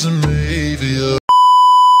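Music with a singing voice that cuts off about a second in, followed by a loud, steady test-tone beep of the kind that goes with TV colour bars.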